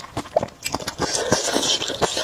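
Close-miked eating: slurping and chewing a mouthful of thick noodles in sauce. A run of short wet clicks, then a longer noisy slurp from about a third of the way in.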